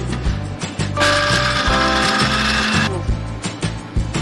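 Background music with a steady beat. About a second in, an electric blender's motor runs with a loud whirr for about two seconds, then stops.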